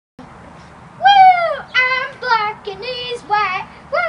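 A very high-pitched, chipmunk-style voice giving a string of about six short sung syllables, starting about a second in; the first slides down in pitch, and another falling one comes right at the end.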